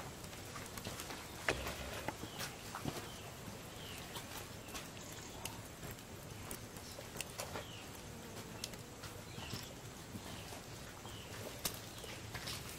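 Wood fire crackling under a casabe griddle, with scattered sharp pops and snaps. Short chirping calls repeat about once a second in the background.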